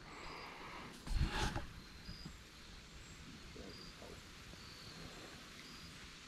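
Quiet swamp ambience with faint insect chirps: short, high notes repeating every second or so. A brief knock comes about a second in.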